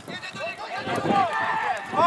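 Indistinct raised voices calling out at an outdoor football match, several shouts in a row over the two seconds.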